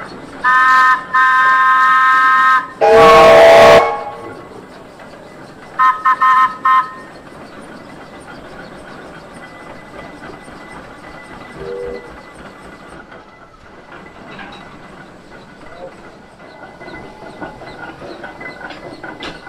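Steam whistles: a high chime-like whistle held for about two seconds with a short break, then a louder, deeper whistle with a rush of steam, and three short toots of the high whistle a few seconds later. A steady low hiss of steam runs underneath.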